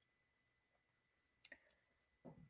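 Near silence, with two or three faint clicks about one and a half seconds in.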